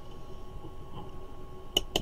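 Rotary selector dial of a handheld digital multimeter being turned, giving two sharp clicks near the end over a faint steady background tone.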